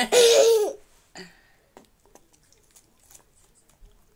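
A young girl laughing out loud in a high-pitched burst for under a second at the start, followed by a short softer vocal sound and then faint scattered clicks.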